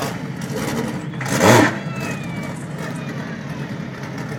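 Racing car engine idling, the Ferguson P99's Coventry Climax four-cylinder, with one short loud throttle blip about one and a half seconds in.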